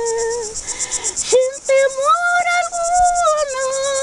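An elderly woman singing a hymn unaccompanied, holding long notes: a held note ends about half a second in, and after a short pause she takes up a higher note that rises, holds and falls. Insects chirp in fast, high-pitched pulses behind her, strongest in the first second.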